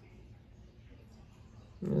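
Low room noise, then a man's drawn-out exclaimed "Oh" near the end.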